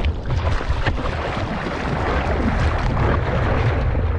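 Seawater splashing and rushing around a surfboard as the surfer drops to the board and paddles, growing a little louder, over a low rumble of wind and water on the microphone.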